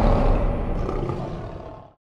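Lion roar sound effect over a logo-sting theme, fading out steadily to silence by the end.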